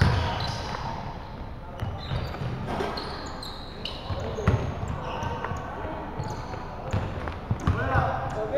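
Basketball game on a hardwood gym floor: the ball bouncing in scattered knocks, short sneaker squeaks, and players' voices calling out in the hall.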